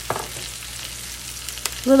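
Ribeye steak, mushrooms and onions sizzling in hot oil in a frying pan: a steady crackling hiss, with a single faint click shortly before the end.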